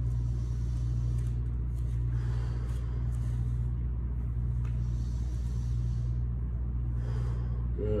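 A man's slow deep breathing while holding a one-leg yoga balance, with two long breaths about two and five seconds in, over a steady low room hum.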